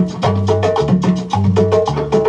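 Cumbia record playing on a turntable: an instrumental passage with fast, steady percussion over a repeating bass line.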